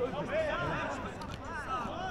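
Indistinct men's voices calling and chattering at a distance, no clear words, over the low background of the open pitch.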